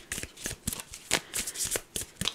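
A deck of tarot cards being shuffled by hand: a quick, irregular run of short card slaps and riffles.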